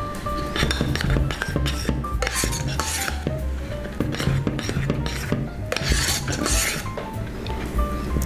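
Metal spoon stirring a thick, cornstarch-thickened red-wine cream in a stainless steel saucepan, scraping against the pan in a few long sweeps, over background music.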